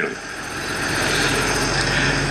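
A steady rushing noise with a low hum underneath, building up over the first half-second and then holding.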